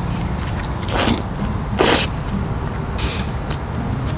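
Steady low outdoor background rumble, with two short hissy noises about one and two seconds in.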